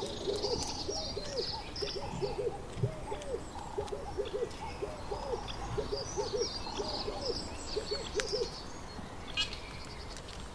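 Birds calling: a rapid run of short, low cooing or hooting calls in twos and threes that stops a little before the end, with small birds chirping higher above them.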